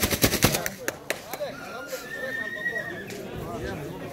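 Grey Arabian mare whinnying with one held call about a second and a half in. It follows a quick run of sharp rattling clicks at the start.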